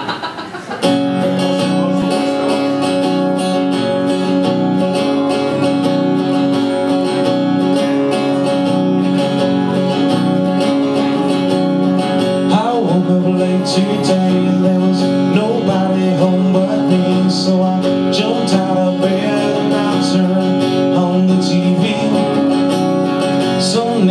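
Acoustic guitar strummed steadily in a repeating chord pattern, starting about a second in after a short laugh.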